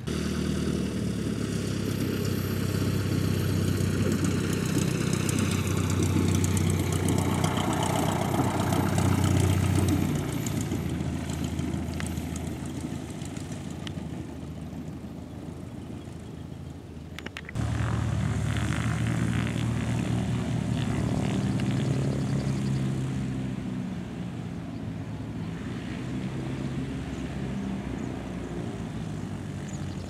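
A small single-engine propeller airplane running loud as it passes, its pitch falling as it goes by, then fading away. After an abrupt cut about 17 seconds in, another light aircraft engine is heard, loud at first and then steadier.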